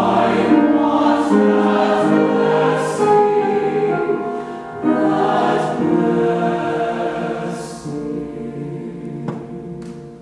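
Mixed choir of men's and women's voices singing a sustained, slow-moving choral passage in several parts. There is a short breath break about five seconds in, and the phrase fades away near the end.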